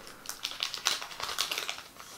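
Shiny foil wrapper of a trading-card booster pack crinkling and tearing as it is pulled open by hand: a quick run of sharp, irregular crackles, loudest about a second in.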